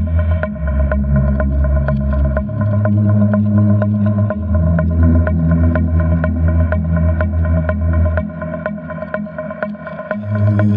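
Electronic music: a deep, sustained synth bass that moves between notes, a steady mid-pitched drone, and regular ticking percussion. The bass drops out about eight seconds in.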